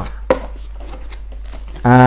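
Cardboard product box being opened by hand: the flaps and inner card rustle and give a few light clicks, the sharpest about a third of a second in.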